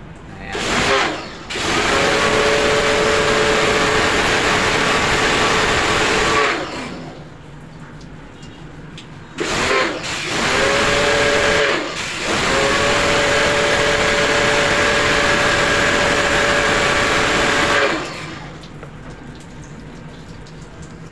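Pressure washer running, its pump motor humming steadily under the hiss of the water jet spraying onto an air-conditioner condenser coil to rinse the dirt out of the fins. It goes in three long spells with short breaks between, then stops near the end.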